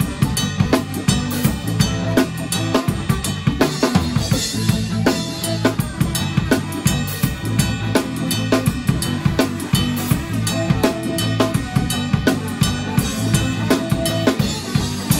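Drum kit played hard and close up during a live band performance: kick drum, snare and cymbals struck in a steady fast beat, loudest in the mix, with bass and guitars playing underneath.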